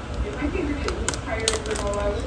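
Quiet speech with a few sharp taps about a second in.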